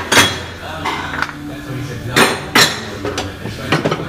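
Steel drive shafts and parts clinking and clanking against one another as they are rummaged through in a pile. There is a sharp clank just after the start and two more close together about halfway through, with lighter knocks in between.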